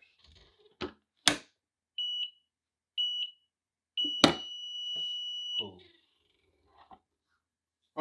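Clamshell heat press closing with two clunks about a second in, then its timer beeping: two short beeps a second apart and a long beep marking the end of a three-second pre-press. A loud clack at the start of the long beep as the handle is released and the press opens.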